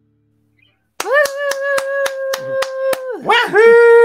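Someone in the studio gives a long high whoop while hands clap about four times a second. A second, wavering whoop follows near the end.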